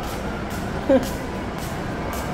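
Steady low rumble of buses running in a bus terminal, with faint footsteps on the tiled floor about two a second. About a second in comes one brief, loud squeak that falls in pitch.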